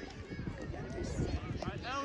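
Distant voices calling across an outdoor soccer field, with a few raised, high-pitched calls about a second in and near the end, over low thuds and rustle.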